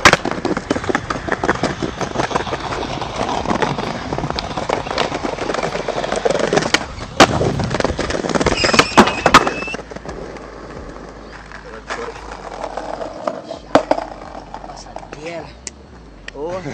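Skateboard wheels rolling on smooth concrete, broken by several sharp cracks of the board popping and landing, the loudest bunched together in the middle. Men's voices are heard faintly near the end.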